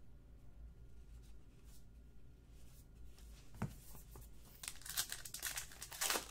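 A few seconds of near quiet with one light tap, then, in the last second and a half, the wrapper of a 2017 Topps Archives baseball card pack crinkling and tearing as it is ripped open.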